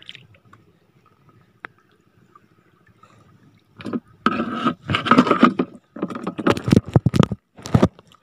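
Shallow seawater splashing and sloshing around a spear or pole being worked in it, in several loud bursts that begin about halfway through after a few faint seconds.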